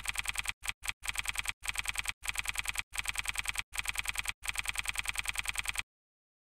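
Typing sound effect: rapid, evenly spaced key clicks, about ten a second, in short runs broken by brief pauses, cutting off suddenly near the end.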